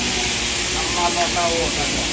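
Compressed air hissing out in a steady stream from a shop air line, cutting in suddenly and running without any rhythm.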